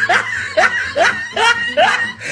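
High-pitched laughter: a run of short laughs, each falling in pitch, about two or three a second.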